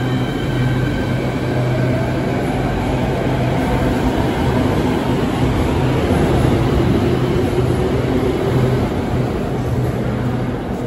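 A Beijing Subway Line 5 electric train pulls out behind platform screen doors. Its traction motors whine in gliding tones over a rolling rumble that builds to a peak in the middle and eases near the end.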